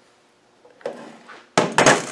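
Starter motor set down on a steel workbench: after a quiet start and a brief rustle, a loud, quick clatter of metal knocks begins in the last half-second.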